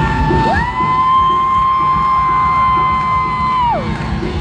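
Live rock band playing to a cheering crowd. A long high note slides up about half a second in, holds steady for about three seconds, then falls away near the end.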